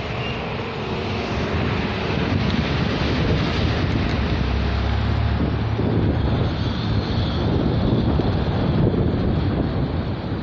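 Wind buffeting the microphone in the open: a steady rushing noise with a heavy low rumble that grows louder from about two seconds in.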